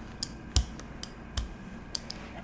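Rubber brayer rolling acrylic paint across a gel printing plate, giving a few soft clicks and taps as the tacky paint spreads.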